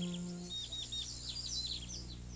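Birds chirping: a string of short high chirps and quick down-slurred calls, with a held music chord fading out about half a second in.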